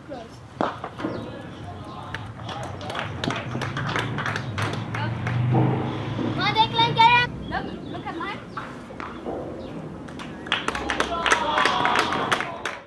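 Indistinct talk from people close by, with a louder called-out voice about halfway through and scattered sharp clicks.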